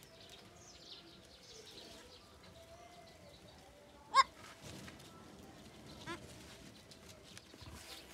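Goat bleating: one short, loud bleat about four seconds in and a fainter one about two seconds later. Birds chirp faintly in the background.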